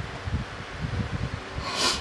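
A woman's sharp breath in through the nose, a sniff, near the end of a pause in her talk, over faint irregular low bumps.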